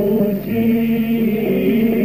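Constantine malouf singing: voices holding a slow, chant-like melodic line in long sustained notes.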